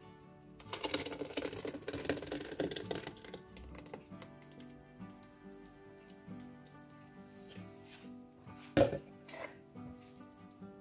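Thick blended tomato purée poured from a plastic blender jug into a large pot, splashing for about two and a half seconds, over faint background music. A single short knock near the end.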